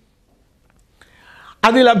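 A man's talk breaks off into near silence for about a second, then a short, faint in-breath, and his speech resumes near the end.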